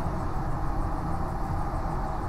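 Steady low rumble of a vehicle heard from inside its cabin.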